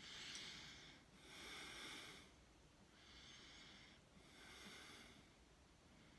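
A man breathing audibly, four soft breaths of about a second each, in and out twice.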